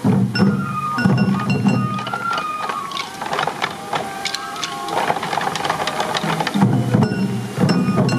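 Traditional Morioka sansa odori music played live: transverse bamboo flutes carry a stepping melody over sansa taiko drums worn at the waist, beaten in a steady rhythm with sharp clicking strikes. The deep drum strokes are heaviest in the first two seconds and again near the end, lighter in between.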